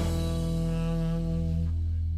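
Background music holding a final chord that fades out, the higher notes dying away before the low bass.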